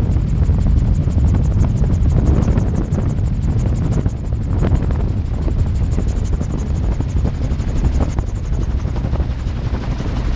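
Magni Gyro M16 gyroplane's engine and spinning rotor running through a landing onto a grass strip, heard from the cockpit as a deep, steady drone.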